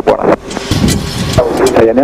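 Voices on the flight-deck radio, with a short garbled stretch early on before a clear voice comes back about one and a half seconds in, over the steady background noise of a Boeing 737-800 flight deck in flight.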